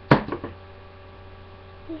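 A sharp knock just after the start, followed by a few smaller clattering knocks within half a second, over a steady electrical mains hum.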